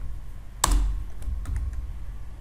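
Computer keyboard keys being pressed: one loud keystroke about half a second in, then a few lighter key clicks, over a low steady hum.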